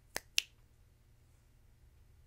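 Two sharp finger clicks about a quarter second apart near the start, made with the hands while pausing to think.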